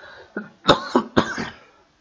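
A man coughing twice, about half a second apart; he has a slight cough.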